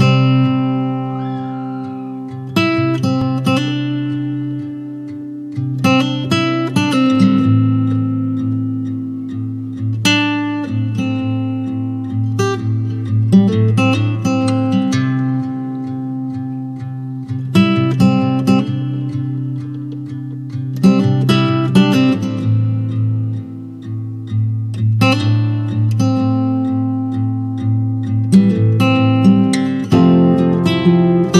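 Background music: acoustic guitar chords strummed and left to ring, with a new chord every three to four seconds.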